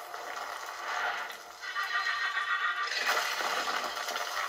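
Cartoon kaiju-fight soundtrack playing from a laptop speaker: a high, warbling monster screech, then a burst of rushing noise about three seconds in.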